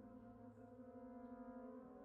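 French horns and tuba holding a soft, sustained chord; the lowest note stops near the end as the harmony shifts.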